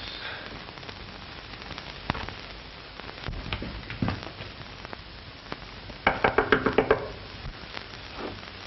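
Rapid knocking on a door, a quick run of about nine knocks in roughly a second near the end, over the steady hiss and crackle of an old film soundtrack.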